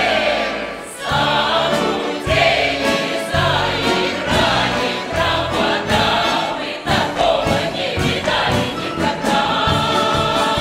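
A large mixed folk choir singing loudly in full voice, in Russian folk-song style, accompanied by an orchestra of Russian folk instruments.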